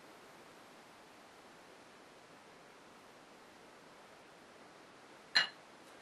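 Near silence: faint steady room hiss, broken about five seconds in by one short, sharp clink.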